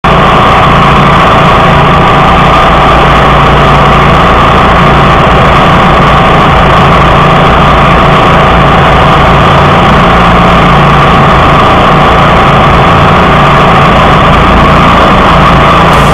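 1999 DR All-Terrain field and brush mower (AT1) engine running steadily and very loud, heard from right at the machine. A second DR brush mower runs nearby.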